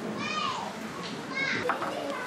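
Two short, high-pitched calls of a child's voice, about a second apart, each falling in pitch, over a background murmur of people talking.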